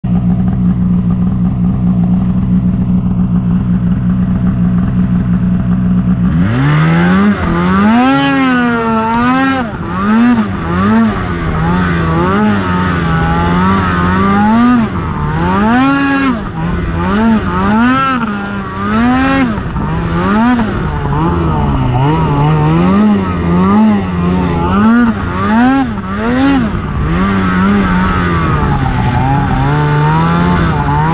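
Polaris snowmobile engine idling steadily for about six seconds, then throttled up and ridden, its revs rising and falling again and again.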